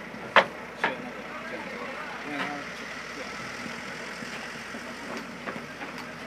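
A boat's engine running steadily, with two sharp knocks in the first second and faint voices in the background.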